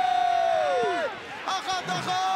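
A male television commentator's long, held goal shout: one sustained high note that falls away about a second in, followed by a few quick excited syllables.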